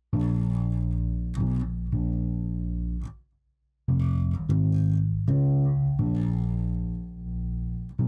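Electric bass played alone, sustained low notes picked out one after another to work out the song's key change, with a short silence about three seconds in.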